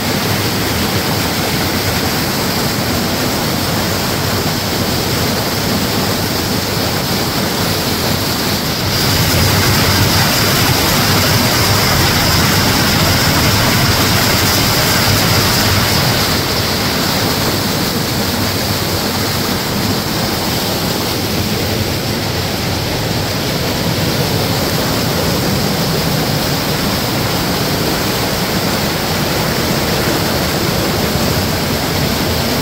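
Waterfall: water cascading over rock, a steady rushing noise that grows somewhat louder for several seconds in the middle.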